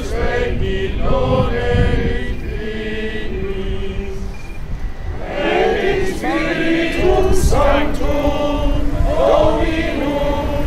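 A choir chanting slowly in held, wavering notes, over a low rumble.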